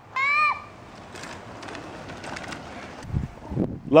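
A child's brief high-pitched call that rises and falls, followed by faint outdoor hiss with a few light crunching ticks, and low rumbles of wind on the microphone near the end.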